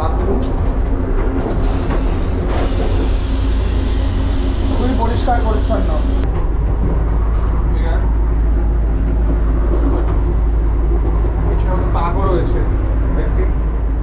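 Steady, loud low rumble of a running electric train, heard inside its toilet cubicle. A few seconds after the flush button is pressed, the toilet's flush hisses for about four seconds over the rumble.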